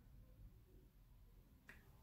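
Near silence: faint room tone, with one faint short click near the end.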